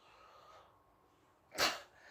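Near silence broken a little past halfway by one short, sharp, breathy burst from the man, an audible breath or snort-like laugh between his exclamations.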